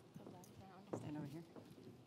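Faint off-microphone women's voices chatting, with a few sharp knocks of footsteps on a stage floor.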